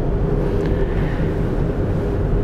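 Steady room hum and hiss with a faint steady tone running through it.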